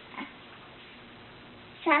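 Quiet room tone with a faint short sound just after the start, then a toddler's high voice saying a word, "trophy", near the end.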